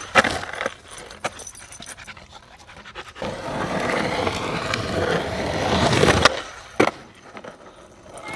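Skateboard wheels rolling over a packed-dirt berm: a clack just after the start, then a gritty rolling rasp that builds for about three seconds as the rider comes close and stops abruptly, followed by one sharp clack.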